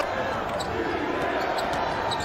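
Arena sound of a basketball game during live play: steady background arena noise with faint bounces of a ball being dribbled on the hardwood court.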